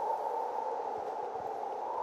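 Steady, even hiss-like background noise with no distinct events.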